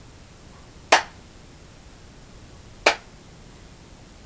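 Two single hand claps, sharp and separate: one about a second in and another about two seconds later.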